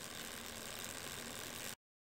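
Freshly lubricated bicycle chain running through the chainring and over a dummy axle as the cranks are pedalled by hand, working the lube into the rollers and pins. It makes a faint, steady mechanical running sound that cuts off abruptly near the end.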